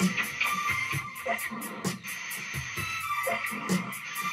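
Live improvised experimental rock jam: a band playing, with a fast steady high beat, about four strokes a second, over sustained tones.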